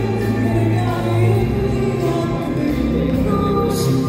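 A woman singing live in Arabic, with an orchestra holding sustained chords beneath her voice.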